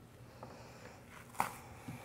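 Bare feet coming down onto a yoga mat out of an arm balance: a sharp thump about one and a half seconds in, then a softer thump just before the end.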